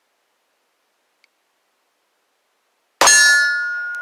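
A single Taurus G2C 9mm pistol shot about three seconds in, sudden and loud, followed by a metallic ringing of several tones that dies away over about a second.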